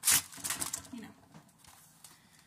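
Parchment paper crinkling as a sheet is handled: a sharp rustle right at the start, then softer rustling that dies away after about a second.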